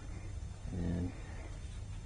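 A brief, low voiced sound from a person, under half a second long, about a second in, over a steady low hum.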